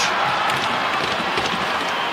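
Hockey arena crowd cheering as a steady roar of noise.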